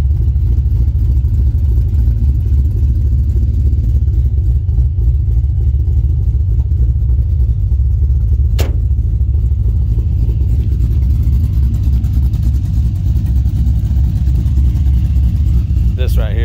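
Twin-turbo LS3 V8 of a 1971 Chevelle idling with a steady deep rumble. A single sharp click comes a little past halfway.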